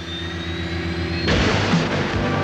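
Opening of a TV show's theme music: a held chord with a thin whine rising slowly above it, then a loud crash about 1.3 seconds in as the theme kicks in.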